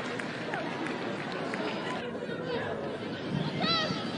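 Football match ambience: a steady haze of crowd and pitch noise with indistinct voices and calls. The background changes about two seconds in, and a few short shouts come near the end.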